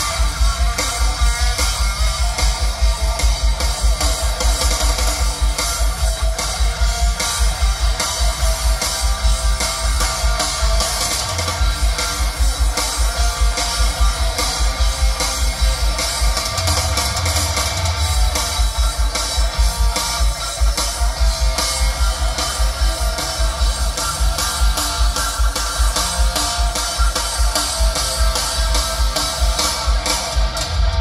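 Live rock band playing through PA speakers: electric guitars over a drum kit keeping a steady beat.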